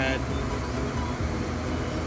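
Steady low outdoor rumble with no distinct events, after a brief pitched sound cuts off right at the start.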